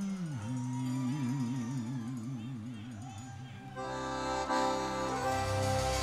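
Live forró music with accordion: a slow solo melody line held with a wavering vibrato, then the full band comes in, louder, about four seconds in.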